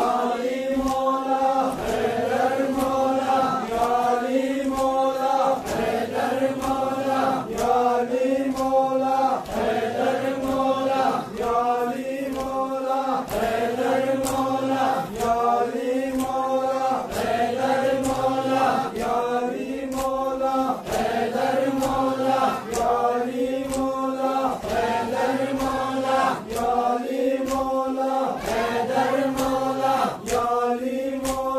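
A group of men chanting a mourning noha in unison in short repeated phrases, with regular sharp slaps of hands striking bare chests (sina zani matam) keeping the beat.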